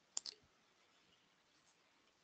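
Near silence with two faint, brief clicks in quick succession shortly after the start.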